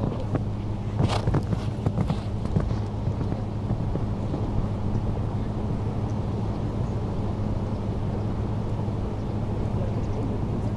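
Open-air ambience dominated by a steady low hum and wind noise on the microphone, with a few short thuds and knocks in the first three seconds.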